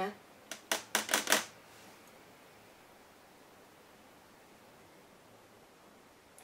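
A quick run of about five sharp clicks and taps, about a second in, from make-up tools or cases being handled. After that there is quiet room tone.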